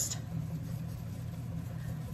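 A steady low hum, as of an appliance motor running in the room.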